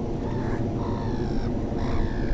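Birds calling, with one drawn-out call in the first second and a half and another starting near the end, over a steady low rumble.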